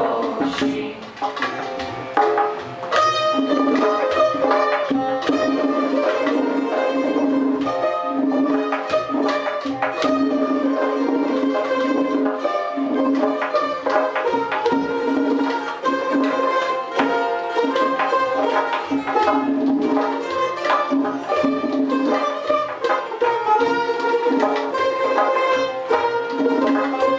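Persian ensemble of tars and tombak goblet drums playing together: quick plucked tar strokes over a steady drum rhythm, in a traditional tasnif melody.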